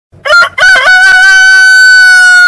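A rooster crowing: a short opening note, a wavering second note, then one long held note.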